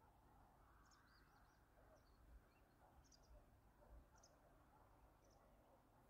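Near silence with faint, short bird chirps about once a second.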